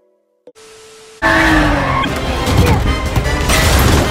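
Movie car-chase soundtrack: after a brief silence and a faint hiss, a loud mix of vehicle engines and crashing cuts in suddenly about a second in, over dramatic film score.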